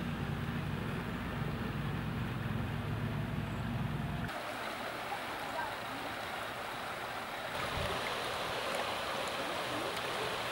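Shallow river running over rocks, a steady rush of water. A low steady hum underneath stops about four seconds in.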